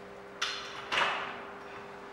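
Two sharp plastic clicks about half a second apart, the second louder, as a whiteboard marker is uncapped, over a faint steady room hum.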